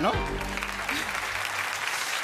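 Studio audience applauding, over a short music sting whose low notes fade out about a second and a half in.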